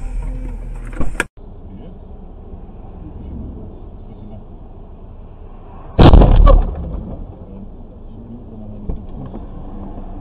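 A sudden, very loud bang of a car collision, heard from inside a car stopped in traffic, lasting under a second about six seconds in, over steady low cabin and traffic noise. A short sharp crack comes about a second in, just before the footage changes.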